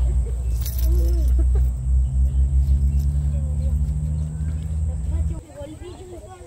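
A nearby motor engine running low and steady, then cutting off suddenly about five seconds in.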